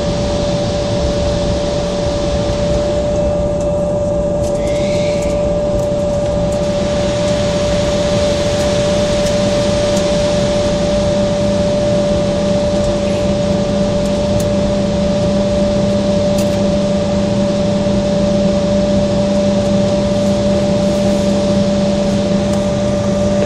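Cabin noise inside an Embraer 170 taxiing at low speed: its General Electric CF34 turbofans run at idle with a steady whine over a rumble and the rush of cabin air. The low hum grows a little stronger about halfway through.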